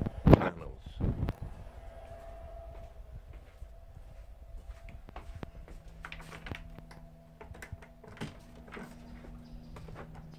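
Footsteps and handling knocks as a sliding screen door is opened. A sharp knock near the start is the loudest sound, and a faint steady low hum comes in about halfway through.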